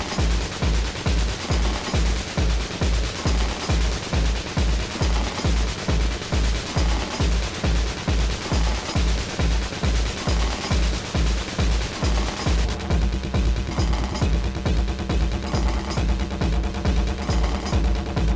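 Techno DJ mix played back from cassette tape: a fast, steady four-on-the-floor kick drum at about two and a half beats a second under a dense upper layer. About two-thirds of the way through, the upper layer drops away, the bass fills out and short high stabs come in.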